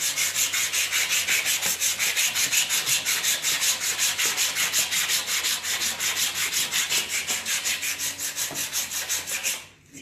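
A strip of sandpaper pulled back and forth around a turned wooden table leg, shoe-shine style, scuff-sanding off old varnish: fast, even rasping strokes, about six a second, that stop just before the end.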